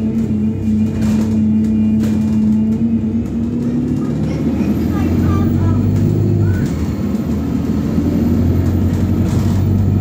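Bus engine drone heard from inside the passenger cabin while the bus drives along, a steady low hum whose pitch shifts about halfway through.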